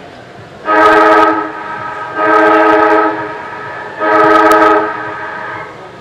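Football ground siren sounding three long, loud, steady-pitched blasts about a second and a half apart, each trailing off in an echo. This is the siren that signals the end of the three-quarter-time break.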